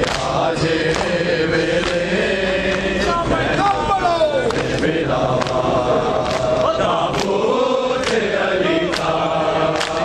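A crowd of men chanting a noha (Shia mourning lament) together, with sharp slaps of matam chest-beating about once a second.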